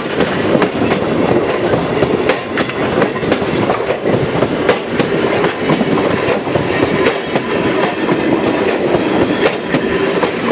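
Passenger coaches of a train rolling past close by, with a continuous rumble and the wheels clacking over the rail joints.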